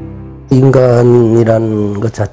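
Soft background music with a steady low drone, cut off about half a second in by a loud man's voice holding one long, drawn-out sound as he begins to speak.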